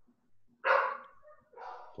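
A dog barks once, loudly, about half a second in, followed by a fainter sound near the end.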